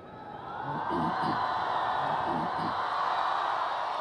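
Large crowd cheering and whooping, swelling over the first second and then holding steady.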